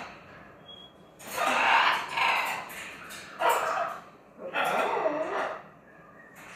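Blue-and-gold macaw giving harsh squawks in three bouts: a long, loudest one about a second in, then a short one and a longer one.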